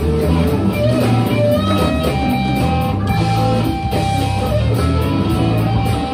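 Live blues band playing an instrumental passage: an electric guitar lead with long held and bending notes over bass guitar, drums and keyboard.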